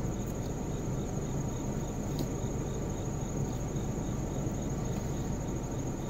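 Crickets trilling steadily, a continuous high note with a faint regular pulsing beneath it, over a low steady background noise. A single faint click comes about two seconds in.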